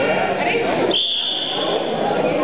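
A referee's whistle blown in one long steady blast starting about a second in, signalling the start of the wrestling bout, over crowd chatter in a gym.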